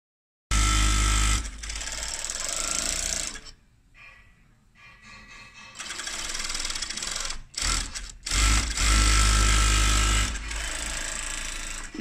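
Cylinder-bed high-speed interlock sewing machine with rear puller, sewing in stop-start runs: a fast, even rattle with a steady whine. It starts about half a second in, nearly stops for a couple of seconds about a third of the way through, then runs loud again in the second half.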